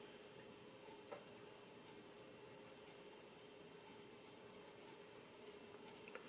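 Near silence: room tone with a faint steady hum, and one faint click about a second in.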